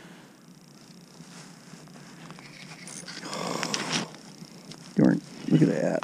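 Quiet at first, then about three seconds in a second of rustling with small clicks. Near the end come two short, loud vocal sounds from a man.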